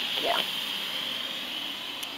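Steady hiss, with a short spoken 'yeah' near the start and no distinct clicks.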